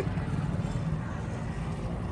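Steady low rumble of road traffic, with a vehicle engine running nearby.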